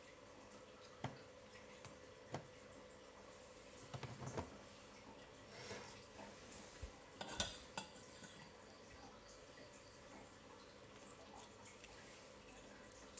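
Light clicks and knocks of a circuit board being handled and set down on a workbench: a couple of single ticks, then a short clatter about four seconds in and another about seven seconds in, over quiet room tone.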